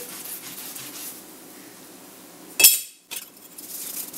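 Scotch-Brite scouring pad rubbing over a small stainless steel tool part, a soft scrubbing, then one sharp metallic clink about two and a half seconds in.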